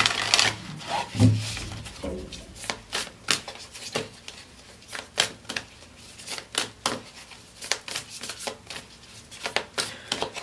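A deck of tarot cards being shuffled by hand: a long run of soft, irregular card clicks with rubbing between them.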